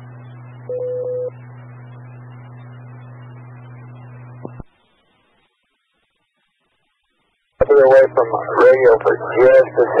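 Amateur radio repeater tail heard through a scanner feed: the open channel carries a steady hum and hiss, with a short beep about a second in (the repeater's courtesy tone). The carrier drops with a click after about four and a half seconds, leaving dead silence until a man's voice comes on over the radio near the end.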